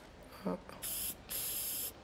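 Aerosol spray can spritzed onto a paper tester strip in two hissing bursts, a short one about a second in, then a longer one.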